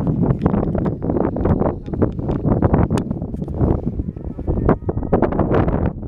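Wind buffeting a handheld camera's microphone: a loud, gusty low rumble that swells and dips irregularly, with scattered small clicks.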